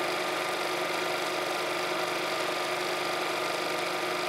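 Film projector running steadily, a continuous mechanical whirr and clatter with a fixed hum.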